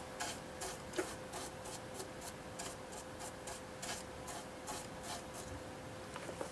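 Stiff-bristled paintbrush scrubbing over the plastic surface of a scale model in a quick, even run of short strokes, about three to four a second and faint. It is rubbing off a dried clay-based panel-line wash to leave streaks.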